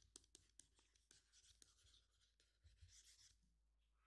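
Near silence, with very faint, irregular taps and scratches of a stylus writing by hand on a tablet screen.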